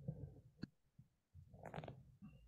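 Faint low rumbling noise over a video-call microphone, with a single sharp click a little past half a second in.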